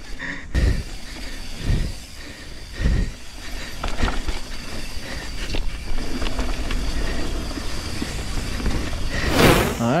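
Canyon Torque CF full-suspension mountain bike rolling fast down a dirt forest trail: a steady rush of tyre and wind noise, with about four dull thumps roughly a second apart from bumps in the trail. A louder rush of noise comes near the end.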